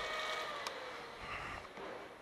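Suzuki GSX-R with the ignition switched on but the engine not running: a faint electric whine, slowly fading, typical of the fuel pump priming. A single small click comes about two-thirds of a second in.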